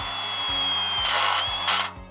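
Milwaukee M12 FQID oil-pulse (hydraulic) impact driver driving a screw into galvanized steel square tube: a steady high whine over a hiss, without the rapid hammering clatter of an ordinary impact driver. It gets louder about a second in and stops shortly before the end as the screw seats.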